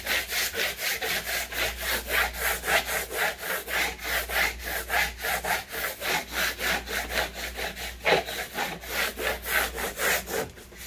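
Orange plastic squeegee rubbed briskly back and forth over a vinyl wall-decal sheet on a wooden table, pressing the covering sheet down onto the cut lettering. Even, quick scraping strokes, about four a second.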